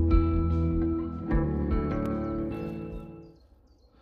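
Instrumental background music of sustained chords, fading out about three seconds in.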